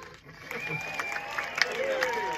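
The song ends, and scattered clapping and cheering from the audience starts about half a second in.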